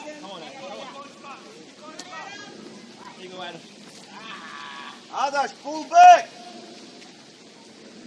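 Scattered calls and shouts from players and sideline spectators during a youth soccer match, with two loud, high-pitched shouts about five and six seconds in.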